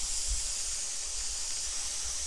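Steady high-pitched background hiss with a low rumble underneath, unchanging throughout.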